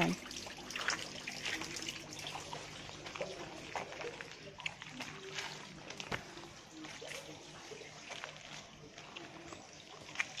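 Water trickling and splashing steadily into a pond, with many small ticks and splashes over the running water.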